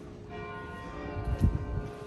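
A church bell ringing, with a fresh strike about a third of a second in whose tones hang on and slowly fade. A short low thump about halfway through is the loudest moment.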